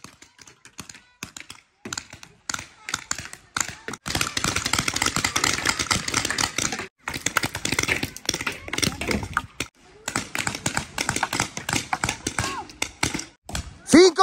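Paintball markers firing in rapid strings of sharp pops, several guns at once. The firing comes in runs of a few seconds broken by short pauses.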